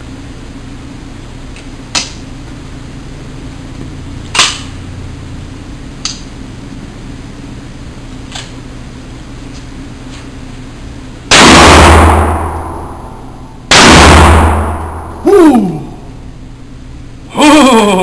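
Russian-made Remington Spartan double-barrel 12-gauge shotgun fired twice, both barrels in turn about two and a half seconds apart, each blast very loud with a long ringing echo off the walls of an indoor range. Before the shots come a few sharp clicks as the gun is loaded and closed.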